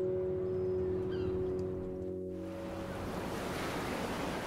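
A held music chord fades away over the first two and a half seconds, giving way to a steady rushing wash of sea and wind.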